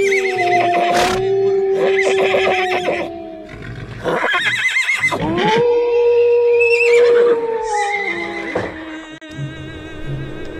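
Horse whinnies, several short quavering calls some of which fall in pitch, laid over music with two long held notes.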